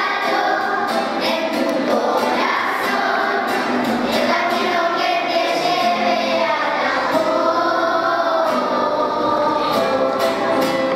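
Children's choir singing together, accompanied by a strummed acoustic guitar.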